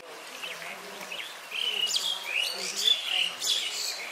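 Small birds chirping: a busy run of quick, high chirps that grows louder from about a second and a half in.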